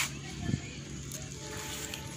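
Handling noise as a kitten is set down onto a pile of cut leafy branches: a sharp click at the start and a soft knock about half a second in, over a faint steady low hum.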